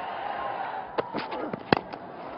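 Cricket bat striking the ball with a single sharp crack near the end, over a steady hum of stadium crowd noise.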